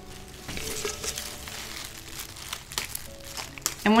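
Irregular rustling and crinkling as leaves are stripped by hand from a bundle of cut flower stems held over paper wrapping. Faint background music sits underneath.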